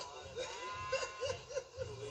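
A person laughing in a quick run of short 'ha' pulses, about four a second, over about a second.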